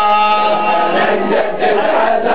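A crowd of men chanting a Shia mourning hawasa in unison, unaccompanied. They hold one long note through the first second, then the melody moves on.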